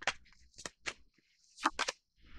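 Tarot deck being shuffled by hand: a handful of short, crisp card snaps, spaced irregularly, with a quick run of three near the end.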